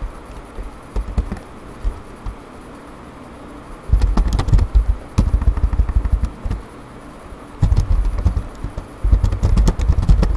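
Typing on a computer keyboard close to the microphone: bursts of rapid key clatter with dull thumps, starting about four seconds in after a few scattered clicks.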